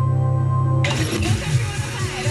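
Radio music played through small desktop speakers and a subwoofer: a held low drone with steady overtones cuts off abruptly just under a second in, and a busier, fuller music track begins at once.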